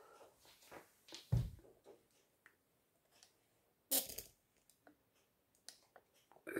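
Faint, scattered movement and handling noises of a person close to the microphone: a soft low thump about one and a half seconds in, and a short sharp knock or rustle at about four seconds.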